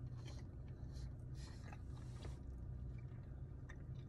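A man faintly chewing a bite of pizza with a crisp crust, with small scattered crunches, over a low steady hum.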